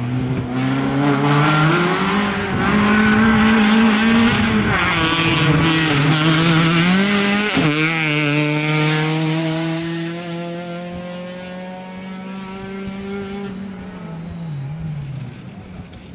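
Peugeot 206 rally car engine revving hard at full throttle as it approaches and passes. The pitch climbs, dips and climbs again, with a sharp crack about halfway through. A long steady high-revving note then fades as the car drives away.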